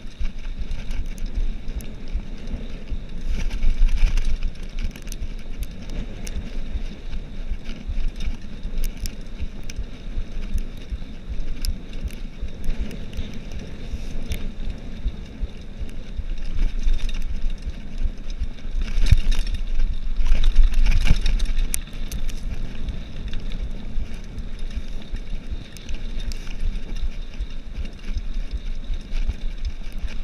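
Cannondale Trail 7 hardtail mountain bike rolling fast down a dirt track: a steady rumble of tyres on dirt and wind on the microphone, with a scatter of small clicks and rattles from the bike over bumps. It gets louder around 4 s in and again from about 19 to 22 s.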